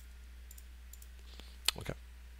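A sharp computer mouse click near the end, followed by a couple of softer clicks, over a steady low electrical hum.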